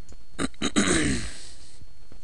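A man coughs once, about a second in: a rough burst with a voiced tail that falls in pitch, just after two short clicks.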